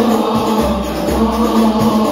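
Congregation of men singing Islamic sholawat together, led by an amplified voice, in a steady devotional chant.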